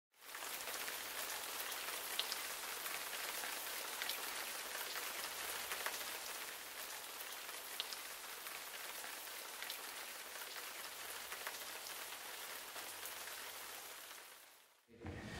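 Waterfall: a steady, even rush of falling water, growing slightly quieter over time.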